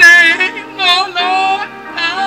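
A woman singing loudly through a handheld microphone, her voice wavering with a wide vibrato, in two phrases: a short one at the start and a longer one about a second in. Steady held accompaniment sounds underneath.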